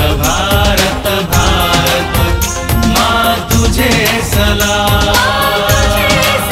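Patriotic Indian song: male voices singing over instrumental backing with a steady beat.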